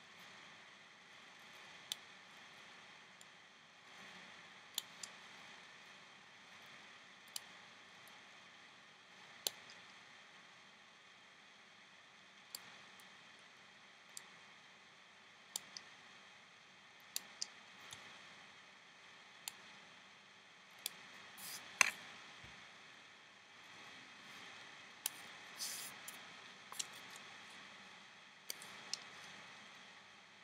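Small rubber loom bands being picked and pulled off a woven rubber-band piece by hand: scattered light clicks and snaps every second or two, the loudest a little past the middle, over a faint hiss.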